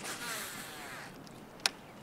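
Baitcasting reel spool whirring as line pays out on a cast, the whine falling in pitch and fading out over about a second. A single sharp click follows near the end.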